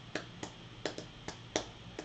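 Hands keeping time with the music: a run of short, sharp snaps, about three a second.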